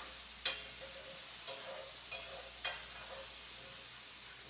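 Sliced mushrooms sautéing in an oiled skillet with a steady sizzle as they brown. A utensil stirred through them clicks and scrapes against the pan four times.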